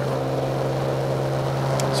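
A steady low hum with no change in level, and a short click near the end.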